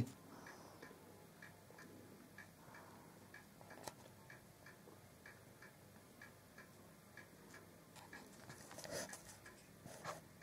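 Near silence with a faint, even ticking, about three ticks a second, and a single sharper click about four seconds in.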